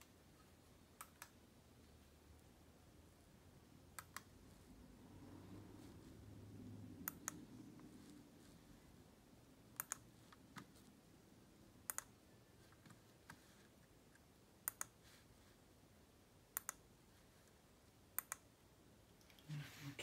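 Short, sharp clicks of a first-generation Apple wireless keyboard's keys or power button being pressed, single or in pairs every two to three seconds, with little else to be heard. The keyboard is being tested to see whether it now powers on after a repair.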